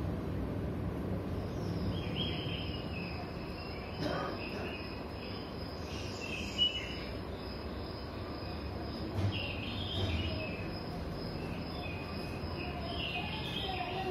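Forest ambience from the film's soundtrack played over hall speakers: a steady high insect drone with scattered bird chirps, over a low rumble of room noise.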